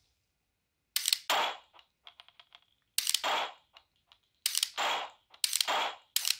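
AR-15 fitted with a Mantis Blackbeard auto-resetting trigger system dry-firing four times, a second or two apart. Each trigger pull is a sharp click followed a fraction of a second later by a second click.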